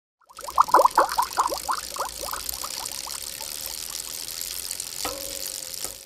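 Bubbling, pouring water sound effect: a run of short blips, each dropping in pitch, coming quickly at first and then slowing, over a splashy hiss. About five seconds in comes a click with a brief held tone.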